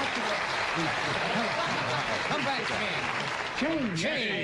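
Studio audience applause, with men's voices calling out over it from about a second in, loudest near the end.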